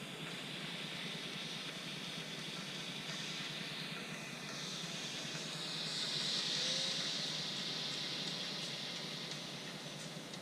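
Electric E-Flite F4U Corsair RC warbird flying past, its brushless motor and propeller giving a rushing whoosh. The whoosh swells to its loudest about six to seven seconds in as the plane passes, then fades as it climbs away.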